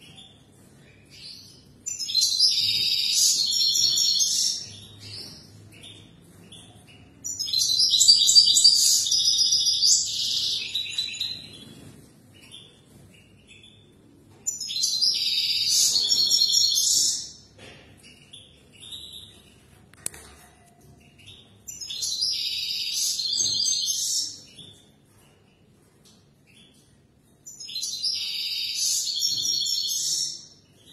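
European goldfinch singing: five bursts of high, rapid twittering song, each two to four seconds long, with short single chirps in the pauses between them.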